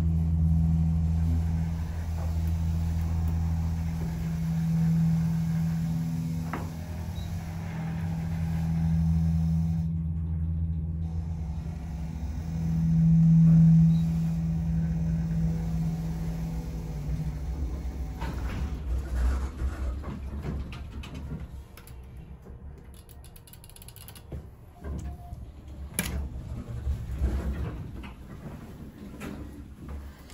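Dover hydraulic elevator running up, heard from inside the cab as a steady low hum that swells briefly and stops about 17 seconds in, as the car reaches its floor. Scattered clicks and knocks follow, with one sharp click near the end.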